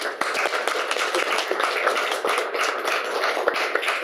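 Audience applauding: a dense, steady patter of many hand claps that starts suddenly.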